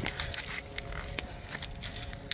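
Footsteps on gravel and grass with light handling clicks from a key fob on a lanyard, over a low rumble.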